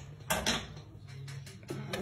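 Sharp metallic clicks of a lockpicking tool being worked in the keyhole of a Securemme lever lock: two clicks about half a second in, then fainter ticking and another click near the end.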